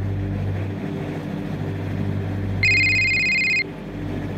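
A telephone's electronic trilling ring sounds once, for about a second, starting about two and a half seconds in, one burst of a repeating ring. Under it runs the steady low hum of a vehicle's cabin.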